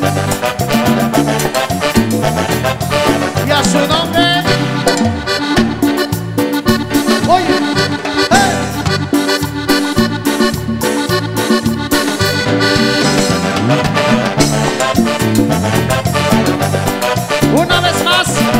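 Live Latin American band music playing an instrumental passage, with a steady beat under melody instruments and no singing.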